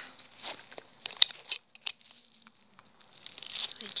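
Rustling of clothes and bags being handled during packing, with a few small sharp clicks about a second in, as plastic clips or fasteners are snapped shut.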